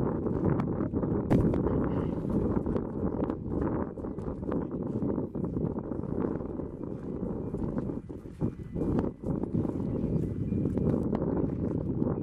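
Wind buffeting an outdoor camera microphone: a steady, fluctuating low rumble with irregular small knocks and clicks.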